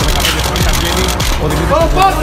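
Loud, rough outdoor recording: heavy noise with people's voices shouting, the shouts rising near the end.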